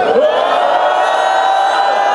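A large choir and crowd of voices singing one long held note together, after a short slide up into it at the start.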